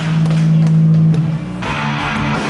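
Rock band playing live: a held low note with a few drum and cymbal hits, then about one and a half seconds in the full band comes in with guitars and cymbals.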